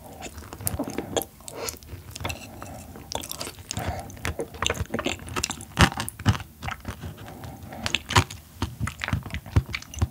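Close-miked chewing of soft yellow stingray liver: a steady run of irregular mouth clicks and smacks, with a few sharper ones past the middle.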